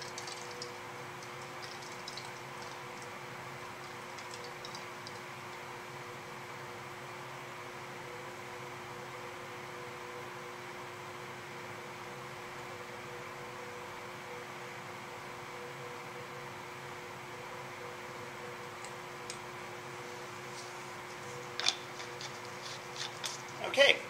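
Steady hum of room ventilation with a couple of faint steady tones. A few light clicks come near the end.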